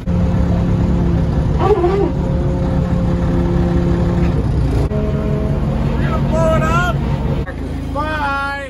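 Diesel engine of an orange loader-type machine, most likely a backhoe loader, running loudly as heard from inside its cab while it pushes a wrecked car. Its note shifts to a different pitch about five seconds in.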